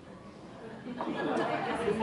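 Speech only: a short lull, then voices talking in a large room from about a second in.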